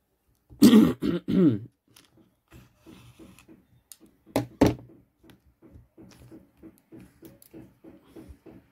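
A person clearing their throat in a few rough bursts about half a second in, then two short, sharp coughs a little past the middle. Faint soft sounds follow, repeating about three times a second.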